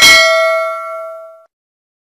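Notification-bell sound effect: a single struck bell chime with several ringing tones, fading out over about a second and a half.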